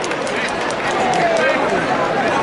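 Arena crowd: many spectators' and coaches' voices calling and shouting over one another, with no one voice standing out.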